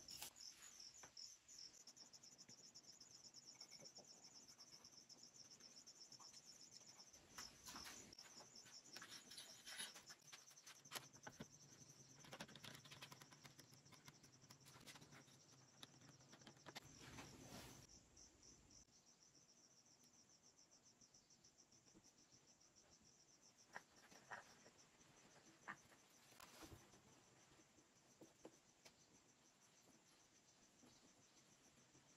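Near silence with a faint insect, likely a cricket, chirping in a steady pulsing trill in the background. Soft clicks and knocks of wooden slats and bar clamps being handled come and go in the middle, then only a few isolated clicks.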